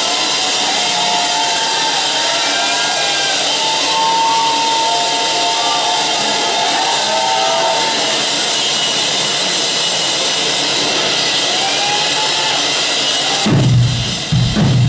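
Live loud rock band: a sustained, steady wash of noise from the stage with wavering pitched sounds and crowd noise running through it. A drum kit comes in with heavy hits just before the end.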